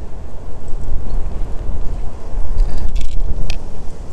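Wind buffeting the microphone: a rough low rumble, with a couple of faint clicks about three seconds in.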